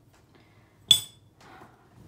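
A single sharp clink with a brief bright ring about a second in, as a small hard makeup item knocks against a hard surface, followed by faint handling sounds.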